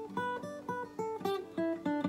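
Acoustic guitar picked one note at a time: a quick, even run of single notes, each ringing briefly before the next, about five notes a second.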